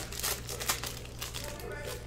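Foil wrapper of a Panini Select soccer card pack crinkling as the pack is handled and opened, a run of short, irregular crackles.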